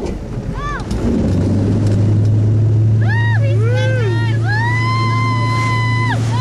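Tow boat's engine opening up about a second in, then running steadily and hard as it pulls a kneeboarder out of the water. Voices call out over it in long, rising and falling shouts.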